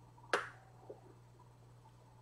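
A sharp click, then a fainter one about half a second later, over a low steady hum.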